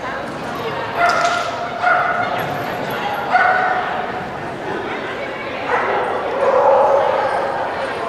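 A dog barking in short, high yips, three about a second apart, then a longer run of calls a few seconds later.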